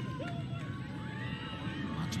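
Background ambience of a televised women's lacrosse game: a low crowd hum with scattered faint distant voices and shouts.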